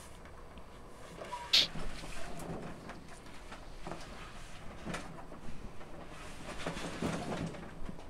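Soft handling noises from a small steel-cased electric kiln being worked on: rubs and light knocks as hands press masking tape onto the case and shift the kiln and its power cord on a table, with a brief sharp scrape about a second and a half in.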